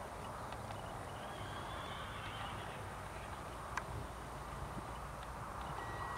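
Faint hoofbeats of a horse galloping away on turf over a steady outdoor hiss, with one sharp click a little after halfway.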